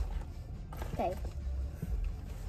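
Low, steady rumble of a car cabin, with a child's brief "okay" about a second in.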